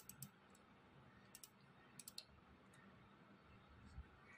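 A few faint computer mouse clicks, scattered through near silence.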